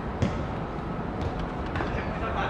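A football kicked once, a single sharp thud about a quarter second in, over steady outdoor background noise, with a few fainter taps after it.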